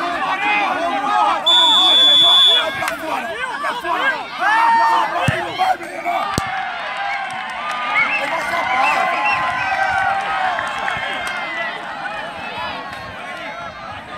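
Referee's whistle blown once, a steady shrill tone of about a second, over the talk and shouting of a crowd of spectators. A few seconds later comes a sharp thump, the penalty kick striking the ball, and the crowd's voices carry on and swell.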